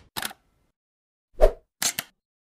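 Three short sound effects from a logo intro animation. A brief crisp click comes near the start, then the loudest, a pop with a low thump, about a second and a half in, and another sharp crisp click just before the end.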